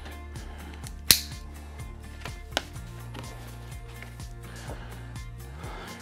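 Quiet background music with steady bass notes, and a sharp click about a second in and a smaller one a little later from a cardboard box being opened with a utility knife.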